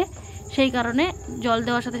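A woman talking over a steady, high-pitched trill of insects.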